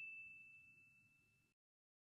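The tail of a single bell-like ding sound effect, one clear ringing tone fading away over the first half-second and then cutting off to dead silence.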